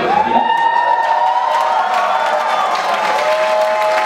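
Concert crowd cheering and applauding right after a rock band stops playing, with a long, steady high tone ringing over the noise.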